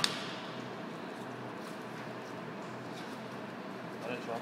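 A single sharp knock on a plastic cutting board at the very start, made while a fish fillet is being handled. After it comes only a steady background hum.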